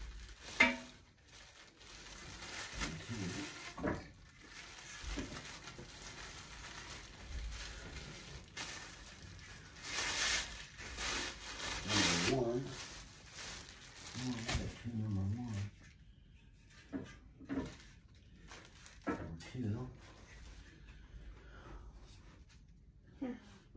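Clear plastic wrapping crinkling and rustling as it is pulled off a black metal bed-frame pole, loudest about ten to twelve seconds in. A single sharp knock near the start.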